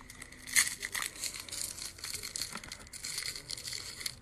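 Gift wrapping crinkling and crackling in the hands as a wrapped item is worked open, with a louder crackle about half a second in.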